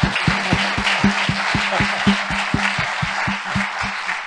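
Audience applauding, a dense steady clatter of many hands. Over it runs a regular beat of closer, heavier claps, about four a second.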